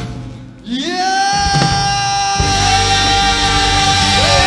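Live band and voices performing a Mongolian pop song: after a short dip, a held sung note slides up about a second in and stays level, and the full band with drums and bass comes in strongly about halfway through.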